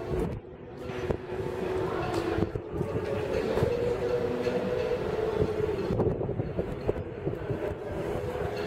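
A steady mechanical hum with two held pitches over a low rumble, crossed by irregular light knocks of footsteps on wooden dock boards.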